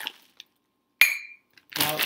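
A single sharp clink about a second in that rings briefly and dies away, after a short rustle of a plastic zip bag at the start.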